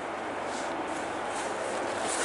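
Helicopters taking off, heard as a steady noise.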